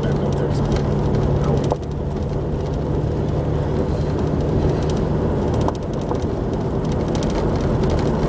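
Jeep driving on a gravel dirt road, heard from inside the cab: a steady engine drone with tyre and road noise and occasional faint clicks and rattles.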